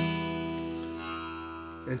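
Acoustic guitar chord strummed once and left to ring, slowly dying away.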